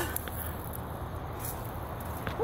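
Quiet outdoor background with a low, steady rumble and no distinct event.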